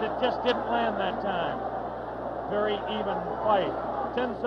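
A man's voice giving boxing commentary, quieter than the surrounding narration and not clearly made out, over a faint steady background.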